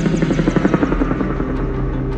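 Helicopter rotor chop: a fast, even beating over a low rumble.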